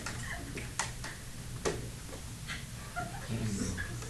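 Classroom background while students work a problem: faint, indistinct voices and a few sharp light clicks and taps over a steady low hum.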